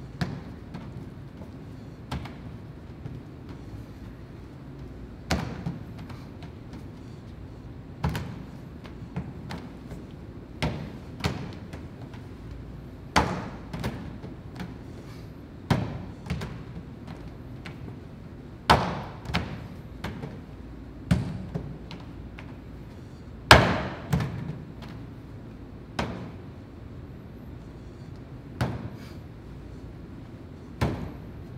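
A rope of hand-pulled noodle dough being stretched, swung and slapped down onto a steel-topped worktable: a thud every two to three seconds, some followed by a smaller second one, the loudest about two-thirds of the way through.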